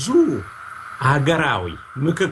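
A man speaking: a short falling-pitch word at the start, then a longer phrase about a second in, with a faint steady tone running underneath.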